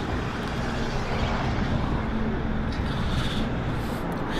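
A 2009 Mini Cooper S John Cooper Works' turbocharged 1.6-litre four-cylinder engine idling steadily.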